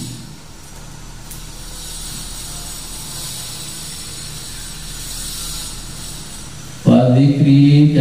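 A steady, soft hiss of background noise, slightly brighter in the middle, while no one speaks; about seven seconds in, a man's voice comes back in abruptly.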